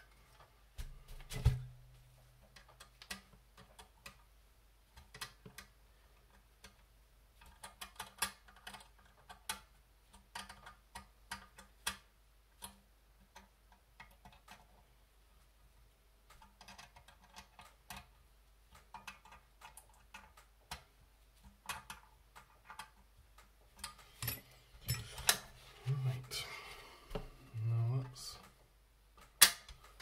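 Irregular light clicks and taps of small metal kit panels, bolts and a small screwdriver being handled and worked together by hand, with a louder knock about a second and a half in and a busier run of clicking near the end.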